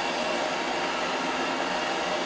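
BBT-1 butane culinary torch burning at about a medium flame with a steady, even hiss while caramelizing the sugar on a crème brûlée.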